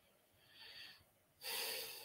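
A man's breaths in a pause between spoken sentences: a faint short breath about half a second in, then a louder breath in through the nose near the end.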